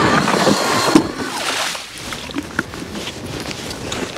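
StrikeMaster ice auger running and grinding its bit through lake ice, its motor whine under a dense rasp that cuts off about a second in. Then a quieter stretch of scattered crunching and wind noise.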